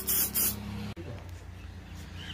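Compressed-air spray gun hissing in short pulses as PU polish is sprayed, cutting off about half a second in. A low steady hum carries on after it.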